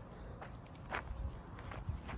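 Footsteps on dry dirt: a few irregular steps, the clearest about a second in.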